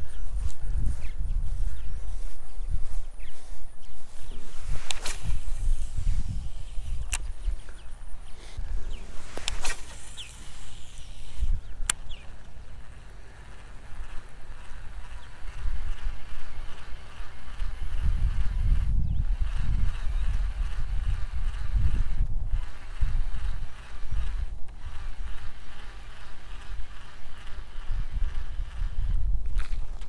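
Footsteps on grass and handling noise from a baitcasting rod and reel, under a steady low rumble, with a few sharp clicks in the first twelve seconds.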